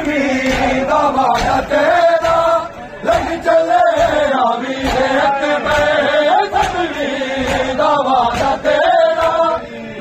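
Group of men chanting a noha, a Shia lament, in unison: a melodic, wavering recitation carried by many voices. Sharp slaps of chest-beating (matam) sound irregularly through the chant, and the voices dip briefly just before the third second.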